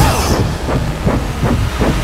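Dense action-film sound effects: loud rushing noise with a quick, uneven run of heavy thuds and clanks.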